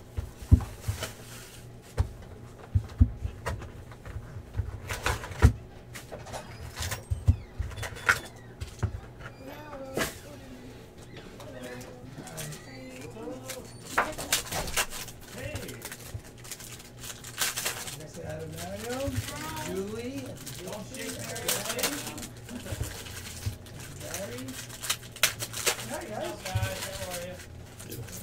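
Foil trading-card packs and a cardboard card box being handled on a table: sharp clicks and taps as packs are set down and sorted, mostly in the first half, and a foil wrapper crinkling as a pack is torn open near the end. Faint rising and falling pitched sounds run underneath in the second half.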